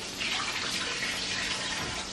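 Beef tallow sizzling in a hot frying pan, a steady hiss that rises slightly a moment in.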